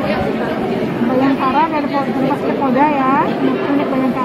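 People talking: indistinct speech throughout, with nothing else standing out.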